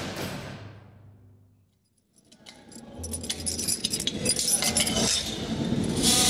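A show-logo transition sound effect: a heavy metallic slam ringing and fading out over about two seconds. After a brief silence, metallic clinking and jangling builds up and grows louder.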